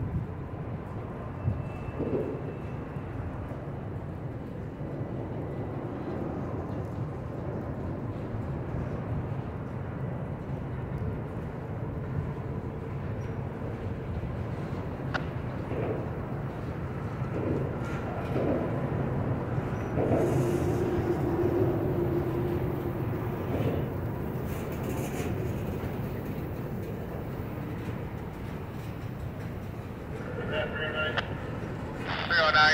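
Freight cars, covered hoppers and tank cars, rolling slowly past at close range: a steady rumble of steel wheels on the rails with a few sharp clanks. A louder stretch about two-thirds of the way through carries a steady whining tone from the wheels.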